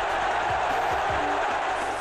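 Stadium crowd cheering as one steady, even noise just after a penalty goal.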